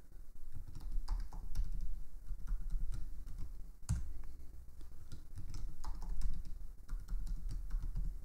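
Typing on a computer keyboard: a run of quick keystrokes as a password is entered, a sharper stroke about four seconds in (the Enter key), then another run of keystrokes as the password is typed again.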